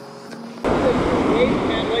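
Wind rushing over the microphone and surf on a beach, cutting in suddenly about half a second in, with a man talking over it.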